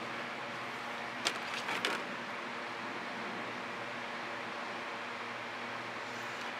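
Steady background hum and hiss, with a short soft click about a second in and a fainter one just after.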